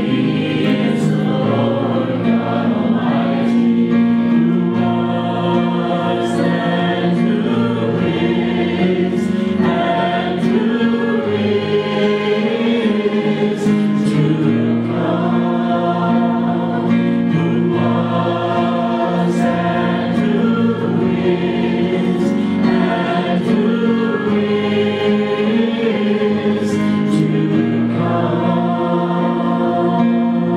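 Live worship music: a group of voices singing a gospel-style song together with the worship band's accompaniment, continuous and steady.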